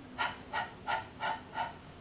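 A woman saying the phonics sound 'h' five times in a row: short, unvoiced breathy puffs of air, about three a second, breathed against her hand held in front of her mouth.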